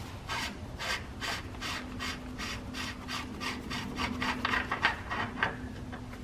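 Threaded filler cap being unscrewed by hand from the transmission housing of a 1941 Caterpillar D2: a run of short scraping rasps from the threads, about two a second at first and coming faster, stopping about five and a half seconds in.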